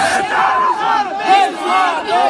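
Large crowd of young men shouting and cheering, many voices overlapping.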